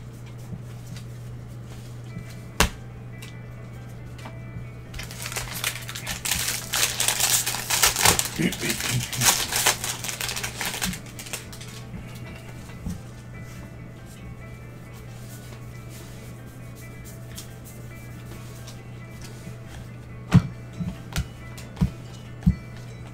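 Baseball trading cards handled and flipped through by gloved hands: a dense run of rustling and card-on-card flicking from about five to eleven seconds in, with a sharp tap early on and a few more near the end. A steady low hum runs underneath.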